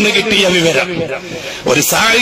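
A man talking in Malayalam, with a brief hiss near the end.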